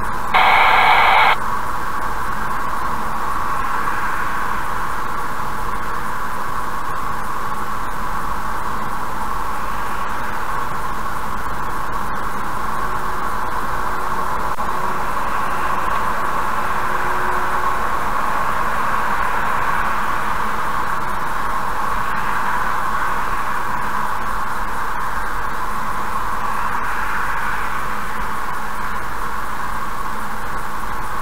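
Steady hiss of road and tyre noise inside a car cruising on a highway at about 70–76 km/h, as picked up by a dashcam microphone. A short electronic beep lasting about a second sounds near the start.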